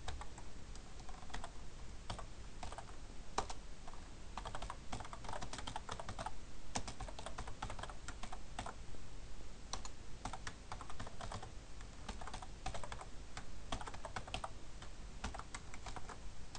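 Computer keyboard typing in quick runs of keystrokes, with short pauses between the runs.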